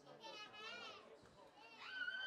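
Faint, distant voices calling out: a high wavering shout in the first second, then a louder rising call near the end.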